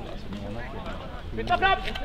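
Shouted calls of people on a football pitch. The voices are faint and mixed at first, then a loud, clear shout comes about one and a half seconds in.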